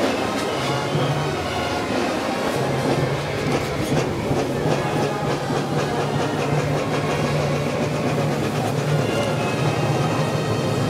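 Procession band playing a slow funeral march, the low brass holding long steady notes that change pitch every few seconds.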